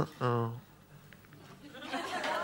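A man's mouth-made sound effect into a handheld microphone: a sharp click, then a short, low, pitched vocal sound lasting about a third of a second. Audience laughter begins to rise near the end.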